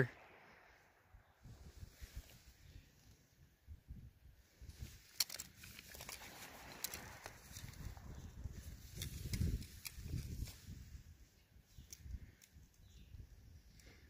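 Faint handling noise from gloved hands working a cut block of ballistic gelatin and a tape measure: scattered light clicks and rustles over a soft, intermittent low rumble.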